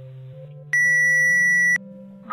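Low sustained electronic notes stepping slowly upward. About two-thirds of a second in, a loud, steady, high-pitched electronic beep cuts in and lasts about a second before stopping abruptly.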